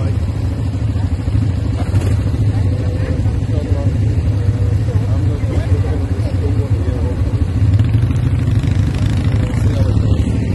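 Quad bike engine running steadily at low revs close by, with a fast even firing pulse.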